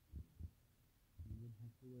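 Near silence broken by two soft low thumps close together, then a man's muffled voice starting a little past halfway.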